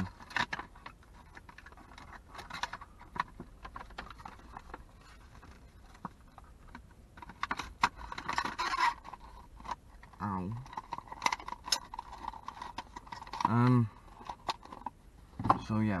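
A rigid clear plastic blister insert and a small cardboard box are being handled, making scattered clicks, crinkles and scrapes, with a longer rustle about eight seconds in. A brief wordless vocal sound comes about ten seconds in and again near fourteen seconds.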